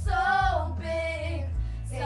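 A young female voice singing, drawing one word out into a long wavering note and then holding a second, shorter note, over a steady low accompaniment.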